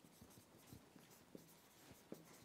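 Blue marker pen writing on a whiteboard: faint, short, irregular squeaks and scratches as the words are written stroke by stroke.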